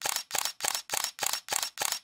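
A camera shutter sound effect clicking in a rapid series of about seven shots, roughly three a second, that cuts off suddenly.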